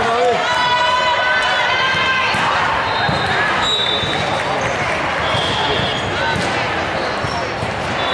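Noise of a busy indoor volleyball hall: many voices talking and calling, volleyballs bouncing on the hardwood floor and sneakers squeaking. A sustained tone sounds for about two seconds near the start.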